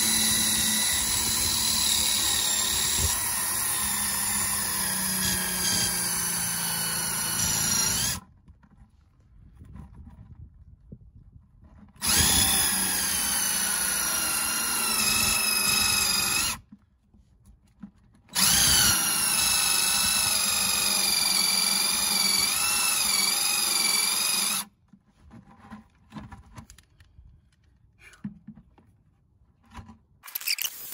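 DeWalt 20V cordless drill turning a one-inch Irwin Speedbor spade bit into a fiberglass boat hull. It runs in three long bursts of about eight, four and six seconds, stopping briefly between them. The motor whine wavers and sags under load as the bit cuts slowly through the fiberglass.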